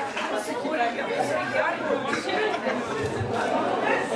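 Audience chatter: many voices talking at once in a large, echoing hall.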